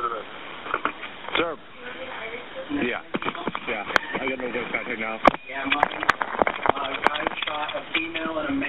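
Recorded 911 emergency call: indistinct voices on the line, with several sharp clicks in the second half.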